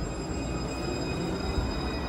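Alstom Citadis tram at a station platform: a steady low rumble with a constant high-pitched whine from its electrical equipment.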